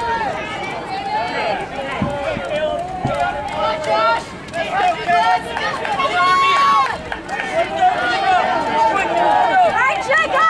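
Spectators' voices calling out encouragement to passing runners, several overlapping, with one loud, high shout about six seconds in.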